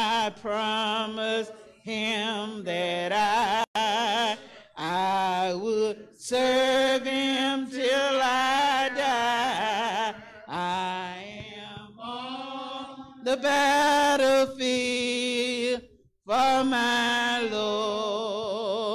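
Unaccompanied hymn singing by one voice with wide vibrato, in long held phrases broken by short pauses.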